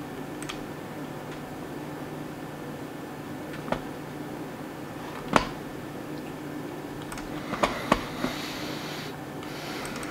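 About half a dozen scattered computer mouse clicks over a steady low room hum. The loudest click falls about midway, and a quick run of three clicks comes near the end.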